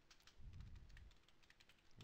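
Faint computer keyboard typing, a quick run of soft key clicks.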